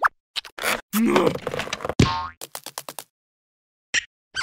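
Cartoon sound effects: a few quick clicks, a busy noisy stretch about a second in, and a springy, boing-like pitch glide at about two seconds. A quick run of ticks follows, then silence for the last second.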